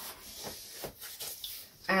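Hands rubbing and scraping over a laptop's retail box and its wrapping while feeling for how it opens, with a few soft ticks.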